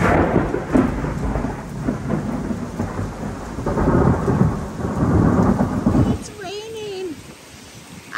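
Thunderstorm: heavy rain with rumbling thunder, loud and surging for about six seconds, then the rain carrying on more quietly.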